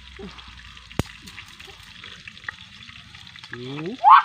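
Food sizzling in a pan over an open wood fire, a steady frying hiss, with one sharp click about a second in and a few faint ticks.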